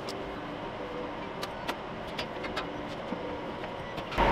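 Steady whirring of rack-server cooling fans, with a few faint clicks from a rack server being slid out on its metal rails.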